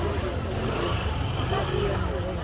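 Crowded market-street ambience: a motor vehicle's engine running with a steady low rumble, under the chatter of passers-by.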